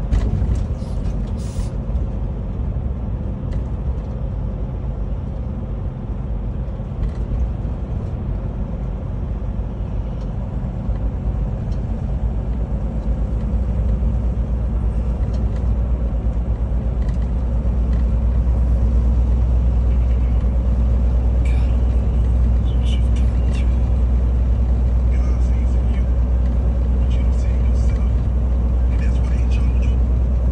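Semi truck's engine and road noise heard inside the cab: a steady low drone that grows louder about halfway through as the truck pulls along the highway.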